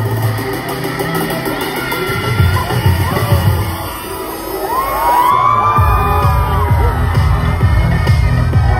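K-pop dance track played loud over a concert sound system, with a crowd cheering. The music thins out and dips around four seconds in, then a heavy bass beat comes back in about six seconds in.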